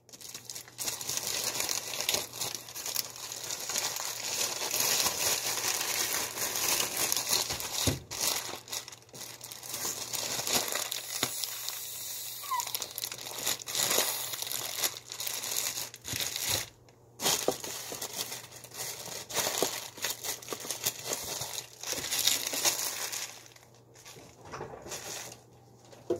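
Plastic bags and paper wrapping crinkling and rustling as they are handled, almost without pause, with a few brief lulls.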